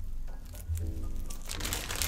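Light background music, with a guinea pig chewing a fresh leaf, a soft crunching that builds in the second half.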